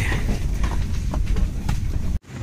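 Airliner cabin noise during boarding: a steady low rumble with scattered knocks and clicks and faint murmuring voices of passengers.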